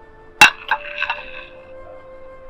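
A metal spoon clinking against plates as rice is served: one sharp clink about half a second in, then a couple of lighter ones, over soft background music with sustained tones.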